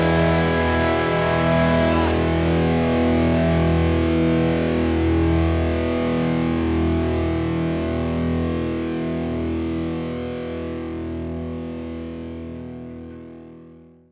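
Distorted electric guitar's final chord struck and left to ring out, fading slowly over about twelve seconds and cutting off suddenly at the very end. A bright hiss above it stops about two seconds in.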